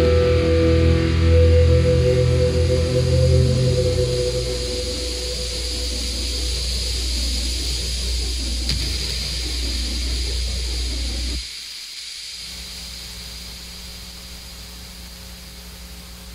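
End of an alternative rock song: loud sustained chords ring out, then give way to wavering tones that sweep up and down. About eleven seconds in these drop away, leaving a quieter steady low hum.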